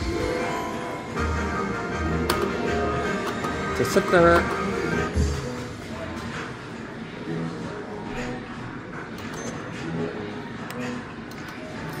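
Slot machine playing its jackpot-win celebration music, with a low pulsing beat for about the first five seconds, then quieter.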